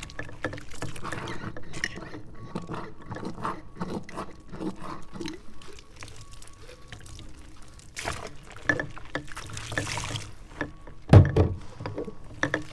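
Soapy water pouring and splashing as glass mason jars are washed by hand with a cloth in a stainless steel sink, with small clinks of glass throughout. Near the end there is a loud knock as a jar is set down in the sink.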